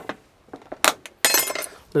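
A metal spoon clinking once against the cooking pot, then a short scrape against the pot or a container as flour is spooned in.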